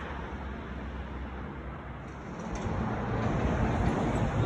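Outdoor background noise with a low rumble that grows louder about two and a half seconds in.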